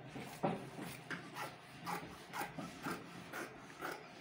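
Fabric scissors cutting through cloth on a table, one crisp snip roughly every half second.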